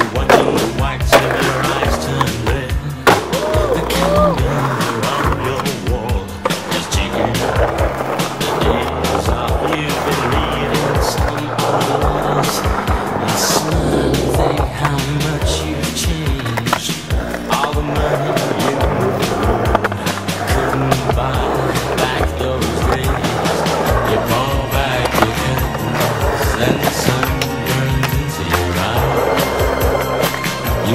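Skateboard wheels rolling on concrete with repeated sharp clacks of the board popping, striking ledges and landing, mixed under a continuous music track with a steady beat.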